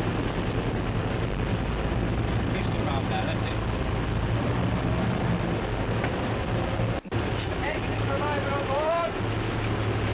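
Steady engine drone under a hiss on an old film soundtrack. The sound drops out briefly about seven seconds in, then indistinct shouted voices follow.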